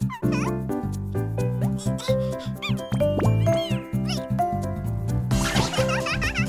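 Bouncy cartoon background music with squeaky, gliding cartoon voice and sound effects over it, and a rushing noise near the end.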